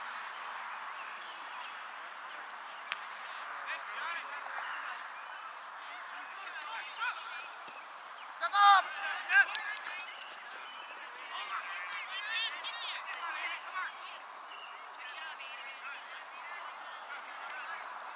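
Outdoor soccer match ambience: a steady background of field noise and distant voices, with two loud shouted calls about nine seconds in and shorter scattered shouts after.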